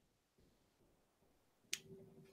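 Near silence: room tone on a video call, broken near the end by a single sharp click, followed by a faint steady hum.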